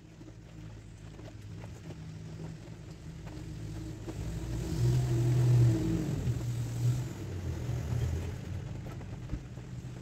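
A motor vehicle's engine passing by, growing louder to a peak about five seconds in and then fading.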